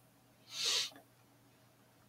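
A single short, hissy breath close to the microphone, lasting about half a second, in otherwise near silence.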